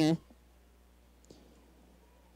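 Near silence: a faint steady low hum, with a single faint click just past a second in.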